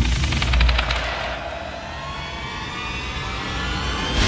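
Anime action sound effects: a fast rattle of clicks in the first second over a steady low rumble, then a rising whine that builds to the end.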